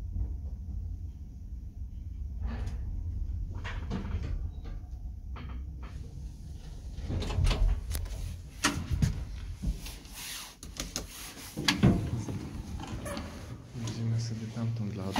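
An old ZREMB licence passenger elevator: a steady low hum with a few light clicks, then from about six seconds in a run of knocks and clatters from its doors and mechanism.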